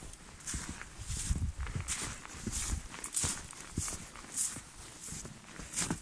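Footsteps in snow, a regular walking pace of roughly one step every two-thirds of a second.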